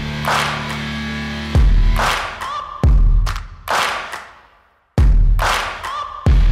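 Logo-intro music: a run of deep bass hits, each followed by a rushing swell, the hits about one to two seconds apart. It drops briefly to silence before the last hit.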